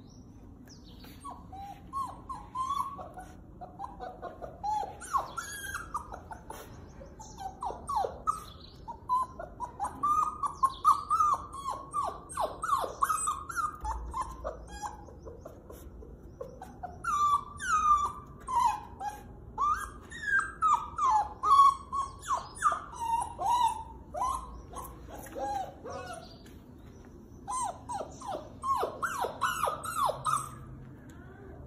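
Puppy whining and whimpering in bouts of short, high, wavering cries, with a pause about halfway and another near the end: the whining of a puppy wanting to be let through a closed door.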